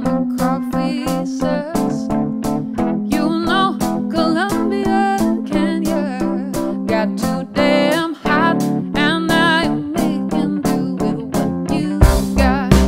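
Live band music: a woman singing lead with vibrato over electric guitar, upright bass, keyboard and drums keeping a steady beat. The band drops out briefly about eight seconds in.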